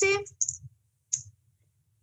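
A woman's speech trailing off, then a pause broken by two short, soft clicks.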